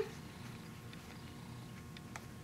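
Faint handling of quilting cotton as fingers fold and press a binding corner, over a low steady room hum, with a faint tick near the end.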